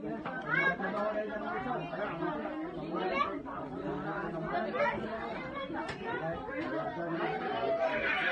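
Indistinct chatter of many people talking at once, with overlapping voices throughout.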